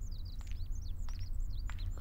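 Small birds chirping: a steady run of short, high, downward-sweeping chirps over a low steady hum, with a few faint ticks between them.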